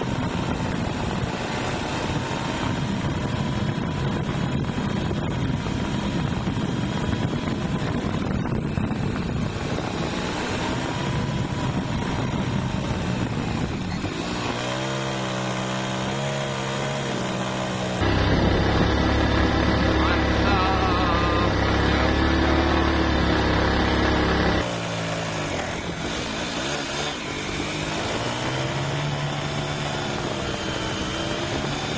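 Engine of a vehicle being ridden along a road, its pitch rising and falling with the throttle. About 18 seconds in, a louder, deeper stretch starts and stops abruptly and lasts about six seconds.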